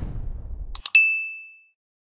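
Subscribe-button animation sound effects over a rush of crashing surf: the surf cuts off with two quick mouse clicks, then a single bright notification ding rings out and fades within about a second.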